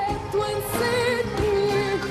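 A woman singing an Arabic pop song live with band accompaniment, holding long notes with vibrato.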